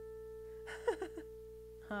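A single keyboard note held and sustaining steadily as it slowly fades, with a short breathy laugh about a second in and another laugh right at the end.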